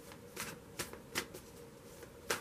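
A deck of tarot cards being shuffled by hand: four short, soft card snaps spread through the two seconds.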